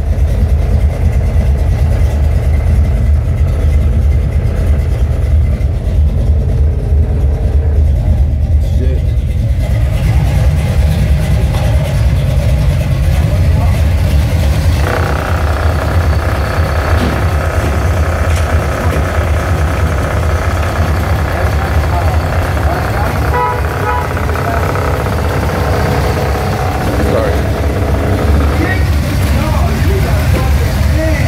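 Buick 455 V8 engine idling steadily. It is heard from inside the cabin at first, then more openly at the engine bay with the hood up from about halfway in.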